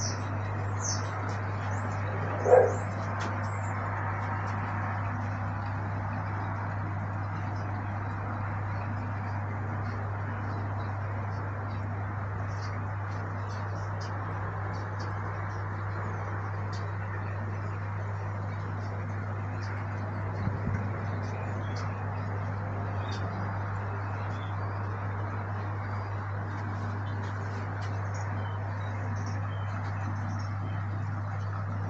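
Outdoor garden ambience: birds chirping faintly on and off over a steady low hum, with one short loud bark from a dog about two and a half seconds in.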